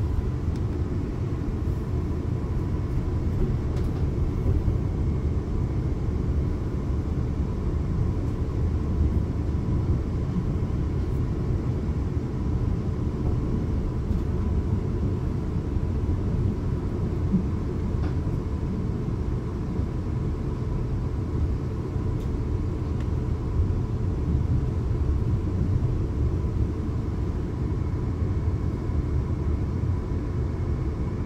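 Cabin noise inside a Class 450 Desiro electric multiple unit under way: a steady low rumble of wheels on the track, with a faint steady high whine running over it.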